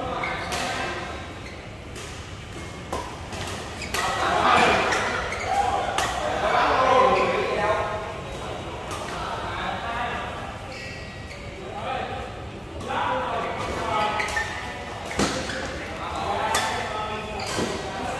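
Badminton rackets striking a shuttlecock during a rally, a string of sharp hits at irregular intervals. The hits echo in a large metal-roofed hall.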